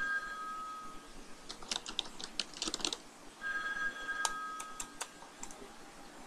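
Computer keyboard typing: quick key clicks in two short spells. A steady two-note electronic tone sounds twice, each time for about a second and a half.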